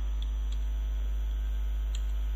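Steady electrical mains hum with an even, buzzy series of overtones and no change in level.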